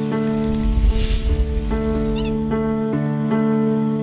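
Gentle theme music of held, sustained chords that change every second or so. A low swell rises through the first half, and a short burst of bird chirps sounds about two seconds in.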